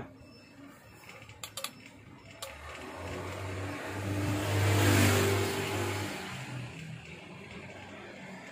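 A motor vehicle passing by: engine sound that swells to its loudest about five seconds in, then fades. A few light clicks come before it.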